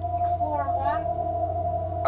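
A steady single tone over a low hum, with a short wavering voice-like sound, its pitch sliding up and back down, about half a second in.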